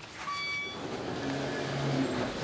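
A call button is pressed on a 1984 Otis elevator modernized by KONE, answered by a short electronic chime. About a second later a low steady hum from the elevator's machinery builds.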